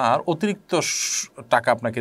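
A man speaking Bengali in a lecturing voice, with a drawn-out hiss of about half a second about a second in.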